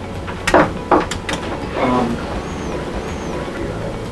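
A quick run of sharp clicks, about four within the first second and a half, over a steady low background: relays inside the ESA615 electrical safety analyzer switching as its automatic sequence moves from the equipment current test to the next leakage test.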